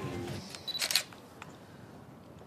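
A digital SLR camera taking a photo: a short beep, then the shutter click about a second in.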